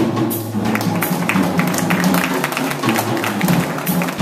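Small jazz ensemble playing: saxophones carrying sustained melody notes over a drum kit, with steady cymbal and drum hits.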